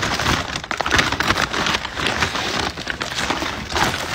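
A bag being rummaged through: steady crinkling and rustling with many small clicks and crackles as things are pushed around inside it, in a search for a missing item.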